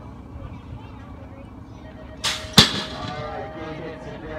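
BMX starting gate dropping: a short rush of noise, then one loud metal slam as the gate falls flat onto the start ramp, with a brief ringing after.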